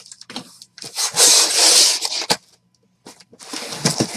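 Packing tape on a cardboard shipping case being split open, a long loud scratchy rip for about a second and a half, followed by cardboard flaps scraping and rustling as the case is opened.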